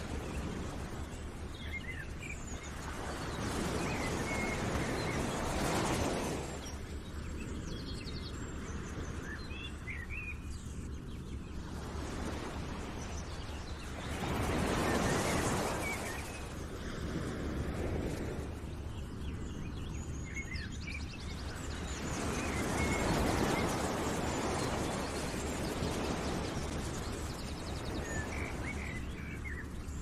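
Outdoor nature ambience: a rushing noise that swells and ebbs every several seconds, with small birds chirping over it.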